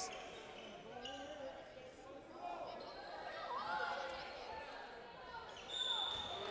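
Faint sounds of a basketball game in play in an echoing gymnasium: a basketball bouncing on the hardwood court, with distant players' voices and crowd chatter.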